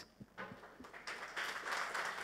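Faint, scattered hand clapping from people on stage and in the audience, a few separate claps at first, then growing a little near the end.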